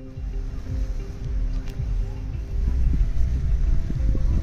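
Wind buffeting a handheld phone microphone, a continuous low rumble, with faint music playing underneath.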